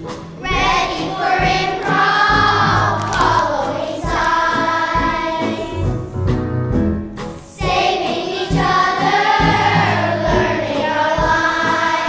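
Children's choir singing, in two long phrases with a brief dip about seven and a half seconds in.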